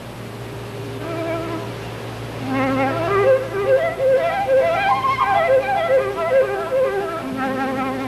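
Solo concert flute played with vibrato: a few soft notes, then a held low note and a quick run of notes climbing about two octaves and falling back, ending on another held low note. A steady low hum sits underneath.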